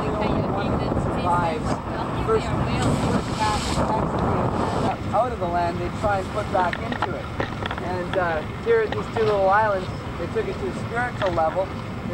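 Wind buffeting the microphone over the steady noise of a boat running on choppy water; it cuts off suddenly about five seconds in. Indistinct voices follow.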